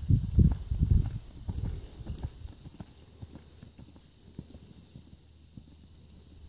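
Hoofbeats of a two-year-old horse running on a sand arena: heavy thuds that are loud in the first second or so, then fade to faint, scattered footfalls as the horse moves away.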